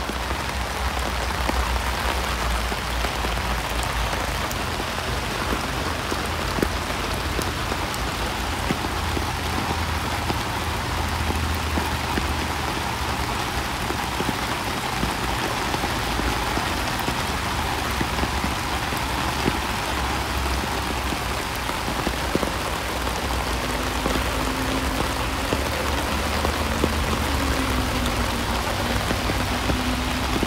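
Steady rain falling, with scattered drops ticking on an umbrella overhead and a low rumble underneath.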